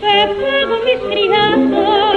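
A 1930 recording of a zarzuela chotis: a voice singing a run of short held notes with wide vibrato. The sound is narrow and dull, with no treble, as on an old record.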